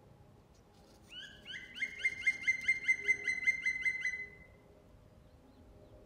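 A songbird singing a rapid trill of evenly repeated rising whistled notes, about six a second, lasting about three seconds before stopping.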